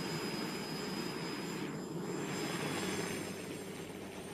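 Helicopter engine and rotor noise, a steady whirring with a choppy low beat, as the helicopter flies overhead.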